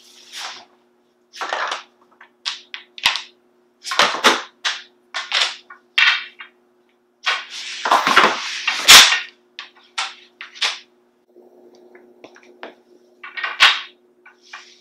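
Flat-pack particleboard bookshelf panels being picked up, slid and laid down on cardboard and a tile floor: a string of irregular clacks, knocks and scrapes, loudest about eight to nine seconds in.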